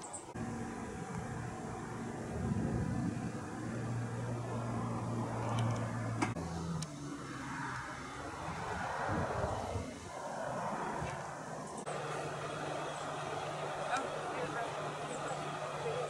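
A low, steady engine hum with faint, indistinct voices in the background; the hum shifts in pitch about six seconds in and again about twelve seconds in.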